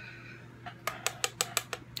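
A quick run of about eight light clicks and taps over a second: a makeup brush being tapped against an eyeshadow palette to knock off excess powder. A faint steady hum sits underneath.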